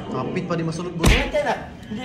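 Voices exclaiming, with one loud sharp slap about a second in.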